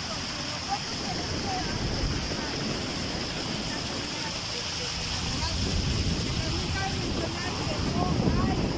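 Motorboat running across open water: a steady engine and water rush with wind on the microphone, swelling a little in the second half.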